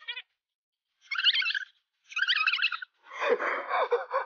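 Two short, high-pitched warbling chirps, like a cartoon bird-tweet sound effect marking dizziness, about a second apart, followed near the end by a louder, rougher burst of sound.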